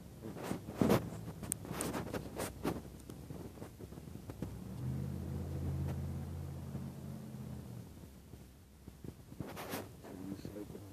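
Several sharp clicks and knocks, then a low, steady motor or engine hum that starts about halfway through and stops about three seconds later.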